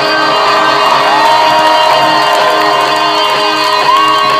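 Live rock concert: electric guitars ringing in a loud, sustained drone while the band stands idle on stage, with the crowd cheering and whooping over it.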